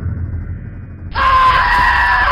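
SCP-096 screaming: a loud, shrill, sustained scream that breaks out about halfway in, as the creature rises from its crouch, over a low droning background.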